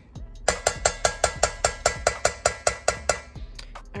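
Metal spoon clinking rapidly against the side of a stainless steel bowl while stirring oil, about five ringing strikes a second, stopping shortly before the end.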